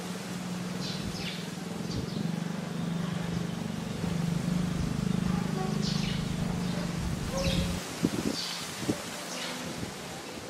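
A steady low hum that swells slightly and then cuts off about eight seconds in, with brief high chirps scattered over it.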